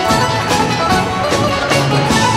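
Instrumental passage of a live band recording of a Greek popular song, with plucked strings over a steady beat.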